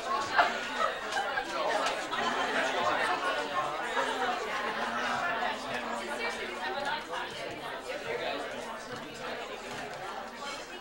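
Roomful of people chatting at once, many voices overlapping, growing a little quieter in the last few seconds.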